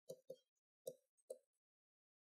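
Faint taps of a stylus on a pen tablet during handwriting: four short ticks spread over two seconds.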